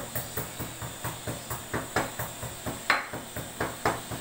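Wooden spoon knocking and scraping against an aluminium pressure cooker while stirring spiced beef chunks: quick repeated knocks, about five a second, with one louder knock near three seconds in.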